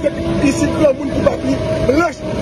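A man talking in the open air over a steady low mechanical hum, like an engine running nearby.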